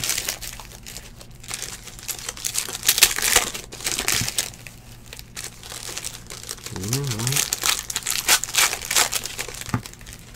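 Foil wrappers of trading-card packs crinkling and tearing as packs are ripped open, in a dense run of irregular crackles, with cards being handled.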